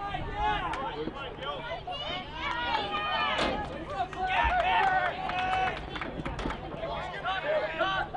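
Many voices of players and spectators at a lacrosse game calling and shouting over one another, with a few sharp knocks scattered through.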